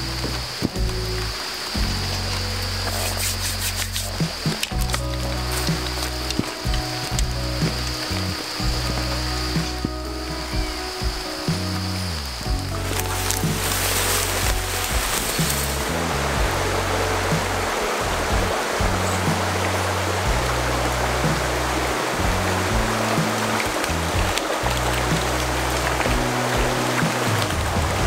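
Background music with a bass line that changes note every second or so, over a steady hiss of running water. A high, even insect trill runs through about the first twelve seconds, then stops.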